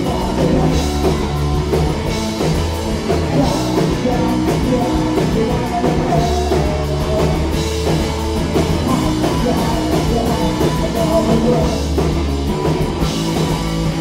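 Punk rock band playing live and loud: electric guitar, bass and drum kit, with singing.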